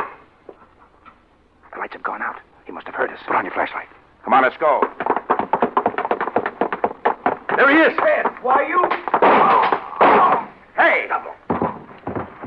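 People's voices without clear words, quieter at first and much louder and denser from about four seconds in, with a short sharp sound right at the start.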